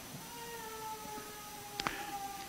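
A faint held musical tone with overtones, a lower note fading out about a second in while a higher one carries on and drifts slightly down in pitch, with a short click near the end.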